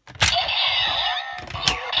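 Electronic sound effect from a Kamen Rider Ghost Driver toy belt's small speaker, starting suddenly as its eye cover is opened: a busy mix of sweeping, swooping tones. A sharp plastic click comes near the end.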